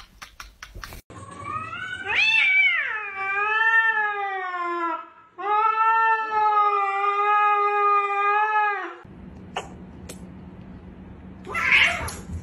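A cat yowling: two long, drawn-out calls of about four seconds each, the first rising and then sliding down, the second held more level with a slight waver. A few clicks come in the first second, and a short rushing noise comes just before the end.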